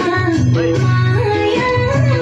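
Music for a Gurung folk dance: a sung melody with ornamented, stepping pitches over a steady instrumental accompaniment.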